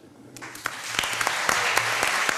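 Audience applause in a hall, starting about half a second in and quickly building to steady, dense clapping.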